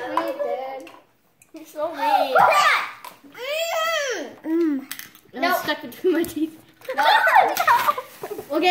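Children's voices: wordless exclamations, babble and giggles. About halfway through comes one high cry that rises and falls, and there is a short silent gap about a second in.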